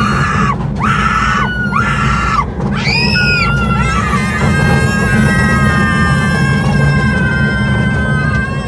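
Riders screaming on a roller coaster over the steady low rumble of the ride. Several short high-pitched screams come in the first three seconds, then one long held scream runs from about halfway on.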